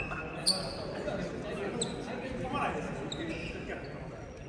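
A basketball bouncing on a wooden gym floor, echoing in the large hall, with a sharp knock about half a second in and a few lighter ones later, among players' voices.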